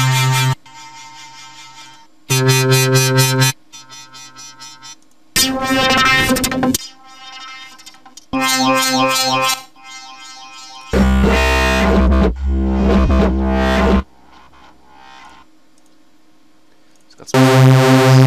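Synth bass presets in the Massive software synthesizer being auditioned one after another: about six short, separate notes of differing timbre, each lasting about a second. A longer, deeper, heavier note sounds in the middle for about three seconds.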